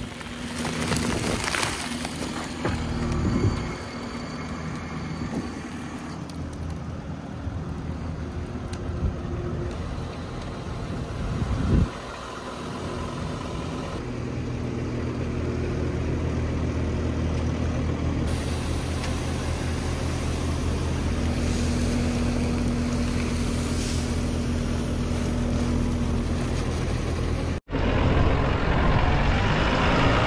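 Diesel engines of farm machinery running steadily, heard in several short clips joined by abrupt cuts, with the last clip near the end switching to a tractor.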